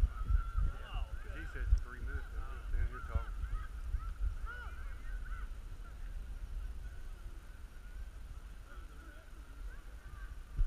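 A flock of birds calling, many short overlapping calls at once, thickest in the first few seconds and thinning toward the end, over a low rumble of wind on the microphone.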